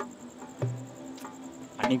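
Crickets chirping steadily in a night-time outdoor ambience, over a low sustained tone. A voice starts again near the end.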